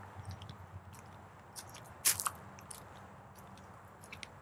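Footsteps in flip-flops on loose gravel: sparse, quiet crunches, one louder about two seconds in.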